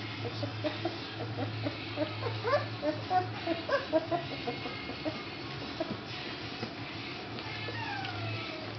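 Young English Springer Spaniel puppies making many short, high, rising squeaks in quick succession, thinning out after about five seconds, over a steady low hum.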